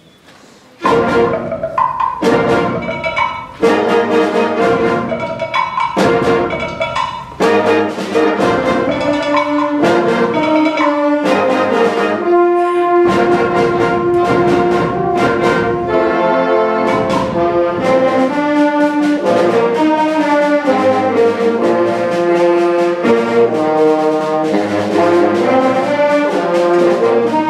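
Middle school concert band of brass, woodwinds and percussion starting a piece: it comes in suddenly about a second in with short, loud accented chords separated by brief gaps, then settles into continuous full-band playing with a moving melody over a low bass line.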